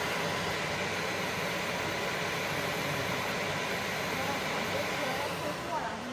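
Fiber laser engraving machine marking metal bolts, a steady hiss that stops about five seconds in.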